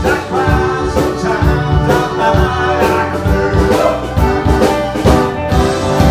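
Live band playing a soft-rock song: drum kit, electric keyboard, violin, acoustic and electric guitars and bass guitar together, with drum strokes about twice a second.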